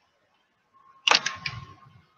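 Near silence, then about a second in a cluster of several sharp clicks over a dull low thump, fading away over the next second; a faint steady high tone runs underneath.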